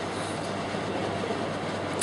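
Steady background noise, an even hiss with a faint low hum underneath, holding at the same level throughout.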